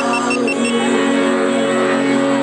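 A loud, steady engine-like drone with a held low pitch, played over a concert PA as part of the band's opening intro, with a short run of quick high beeps in the first moment.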